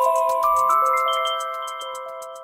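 Television channel ident jingle: bell-like chime notes entering one after another, about half a second and a second in, then ringing on and slowly fading, over a light, fast ticking.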